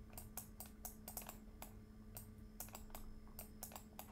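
Faint, irregular clicking of a computer keyboard and mouse, several clicks a second, over a low steady hum.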